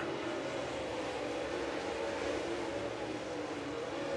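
Dirt late model race cars' V8 engines running on the track, heard as a steady, fairly quiet drone with a faint, slightly wavering pitch over a noisy haze.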